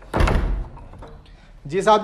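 A door is pushed shut with a single heavy thud just after the start, which dies away within about half a second.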